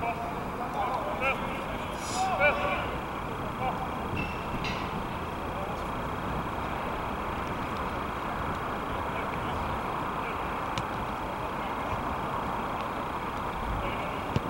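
Open-air soccer match ambience: a steady background hiss with a few short, distant shouts in the first few seconds.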